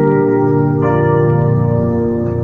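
Electronic keyboard playing slow, sustained chords, with a new chord struck just under a second in.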